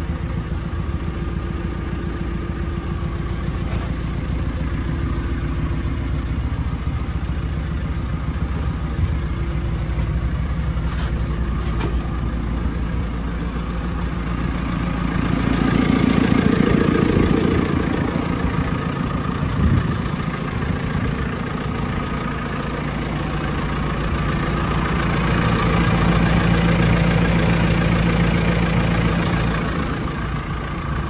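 The diesel engine of a 2017 JCB 3CX backhoe loader idling steadily. It grows louder twice, around halfway and again near the end, and there is a single click a little after the first swell.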